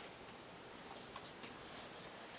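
Quiet room tone with a few faint light clicks, the clearest about a second in.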